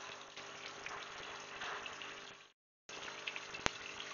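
Faint steady hiss of background noise from the presenter's microphone between sentences, broken by a short dropout to dead silence about two and a half seconds in and a single sharp click near the end.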